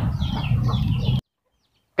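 A chicken clucking in the background over a steady low hum, cut off abruptly just over a second in, followed by dead silence.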